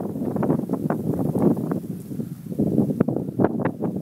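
Wind buffeting the microphone, with irregular crackles and rustling.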